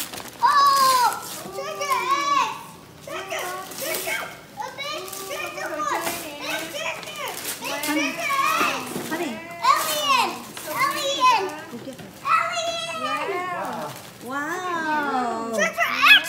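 Young children's high-pitched excited voices, chattering and exclaiming almost without pause, with paper rustling as tissue paper is pulled from gift bags.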